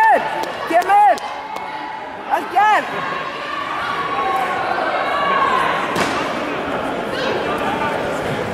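Echoing sports-hall chatter during a taekwondo bout, cut by three short high-pitched shouts whose pitch rises and falls: one right at the start, one about a second in, and one about two and a half seconds in. A single sharp knock sounds about six seconds in.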